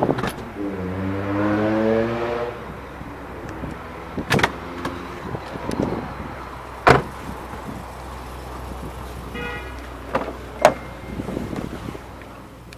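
Electric power-window motor whining for about two seconds, rising in pitch and then levelling off before it stops. Then come several separate sharp clicks and knocks, the three loudest spread well apart, and a brief high tone late on.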